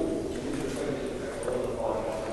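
Indistinct talking from people nearby, too unclear to make out any words.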